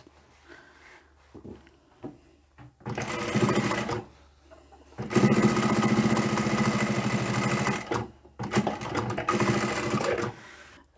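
Electric sewing machine stitching a bag lining's bottom opening closed, in three runs with short pauses between: about a second, then a longer run of about three seconds, then a short one near the end.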